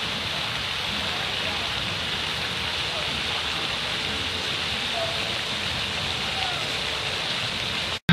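Steady rushing hiss of fountain jets spraying water into a lake, with faint distant voices under it.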